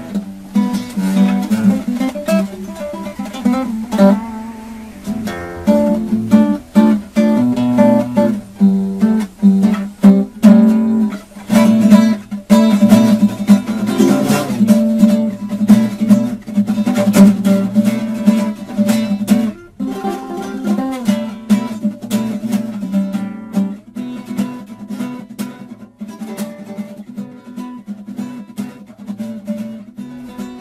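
Acoustic guitar playing an instrumental piece, notes plucked and strummed, with a brief pause about twenty seconds in and softer playing near the end.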